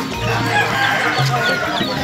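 Many birds chirping in short rising and falling calls, with a rooster crowing.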